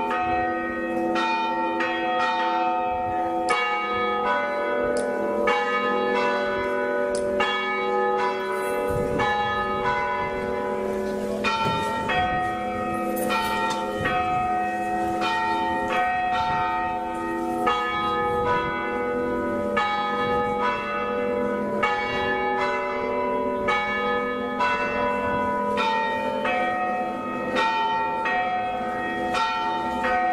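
Tarragona Cathedral's tower bells ringing a peal, rung by the cathedral bellringers: several bells of different pitches struck in steady succession, one or two strokes a second, their tones overlapping and ringing on.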